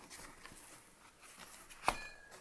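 Faint rustling as a cardboard box and its packaging are handled, with one sharp crackle near the end.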